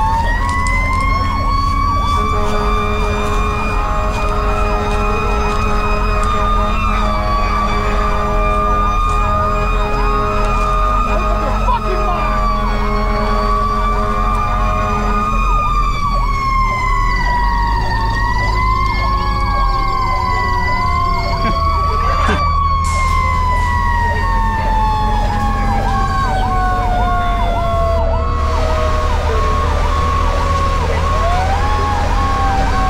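Two sirens sounding together. One is a slow wail that rises and falls in pitch over several seconds; the other is a fast warble repeating a few times a second. Both run over a steady low hum.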